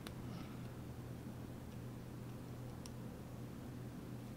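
A few faint light clicks of a small plastic glitter jar and nail-art pen being handled, one right at the start and one about three seconds in, over a low steady hum.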